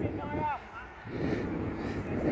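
A short shouted call near the start, then indistinct voices of people on the field.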